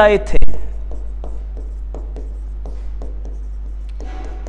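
A stylus writing on an interactive display board, with faint, irregular taps and scrapes of the pen tip on the screen. A steady low hum runs underneath.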